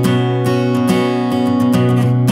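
Indie-folk music led by strummed acoustic guitar.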